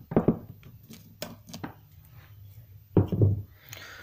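Handling noise: a few scattered clicks and knocks as hands pull blue painter's tape off a metal-leafed fishing lure and crumple it, with a louder cluster of crackles about three seconds in.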